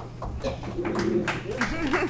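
Quiet, indistinct voices in the room off-microphone, over a steady low electrical hum.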